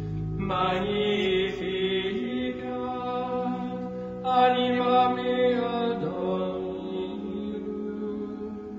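Slow chanted vocal music: long held notes over steady low tones, with a new phrase coming in about half a second in and again a little after four seconds.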